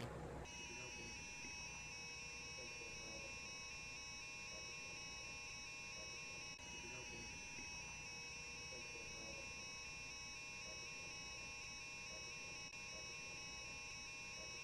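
Handheld electronic halogen leak detector sounding its alarm: a faint, high electronic warble with two tones alternating rapidly, starting about half a second in and holding steady. It signals that the detector has picked up perchloroethylene solvent vapor at the drum-door gasket, a positive indication of a leak.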